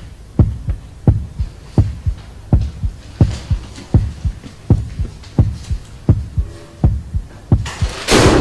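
Soundtrack heartbeat pulse: deep thumps in pairs, like a slow heartbeat, repeating evenly about every seven-tenths of a second over a faint hum.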